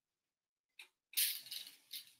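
Candy sprinkles rattling in a small glass bowl as they are scooped out by hand: a brief scratchy rattle starting about a second in and lasting under a second.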